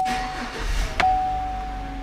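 A Chevrolet Silverado pickup's engine being started with the key and catching quickly, then settling to a steady idle, heard from inside the cab. A click comes as the key turns and another about a second in, and a steady high tone runs alongside.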